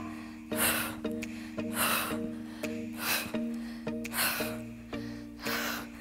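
Background music with held chords, under a woman's sharp breaths from exertion, five of them, about one every second and a quarter, in time with her exercise reps.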